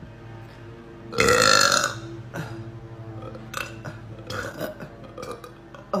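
A woman's loud, long burp about a second in, lasting nearly a second, bringing up air she swallowed while eating; a few smaller sounds follow and a cough comes at the very end.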